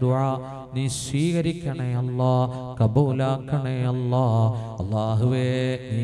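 A man's voice chanting Arabic-Malayalam supplications to Allah (a dua) into a microphone, in a melodic intonation of long held notes with brief breaks.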